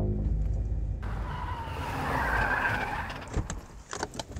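Van tyres screeching under hard braking, starting about a second in, swelling and then fading after about two seconds, over a low engine rumble.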